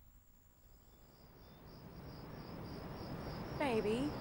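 Crickets chirping in a steady, even pulse, fading in out of near silence after about half a second. A voice sounds briefly near the end.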